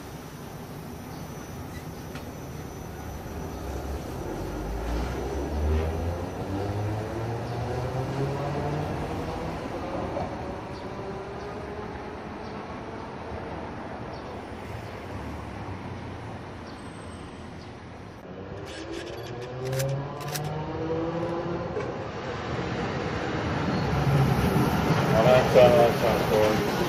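Toden Arakawa Line 7000-series tram pulling away from a platform, its traction motors whining in several tones that rise in pitch as it accelerates. This happens twice, and the loudest part is near the end as a tram moves close past.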